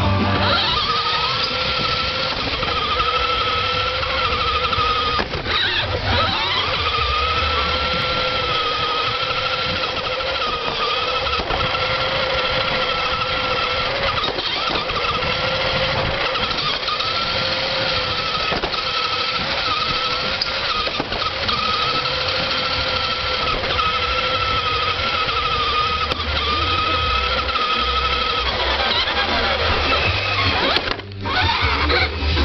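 Radio-controlled model car's motor whining steadily as it drives, picked up close from on board. The pitch wavers slightly with speed and dips and recovers once about five to six seconds in.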